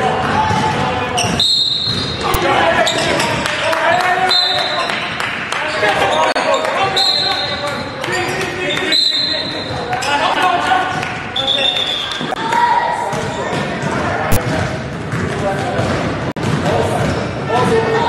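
Basketball practice on a hardwood court, echoing in a large gym: several short high squeaks, spread through the first twelve seconds, from sneakers on the floor, with a ball bouncing and players and coaches calling out. A sharp knock comes near the end.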